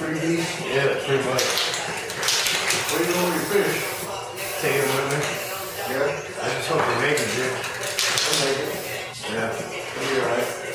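Aerosol spray paint can hissing in a few short bursts, about one and a half seconds in, around two and a half seconds in and again near eight seconds, over continuous background voices.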